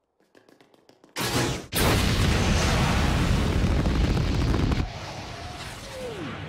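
Space Shuttle launch sound effect: after a few faint clicks, the rocket engines ignite about a second in with a sudden, loud, dense rumble. The rumble holds for a few seconds, then drops to a quieter rush near the end.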